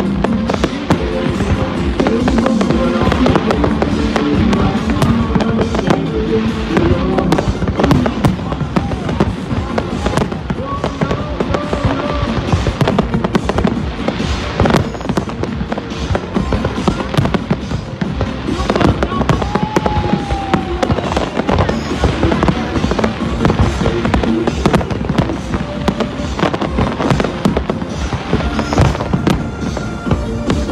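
Aerial firework shells bursting in a dense, continuous run of bangs, with music underneath.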